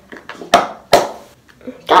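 Plastic lid of a Kinetic Rock tub being pressed down, with two sharp snaps a little under half a second apart as it is forced shut.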